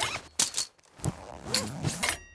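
A quick run of about five sharp clicks and snaps with short scraping noises between them.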